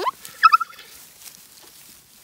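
Newborn Zwartbles lamb bleating: a short rising cry, then a quick, wavering bleat about half a second in.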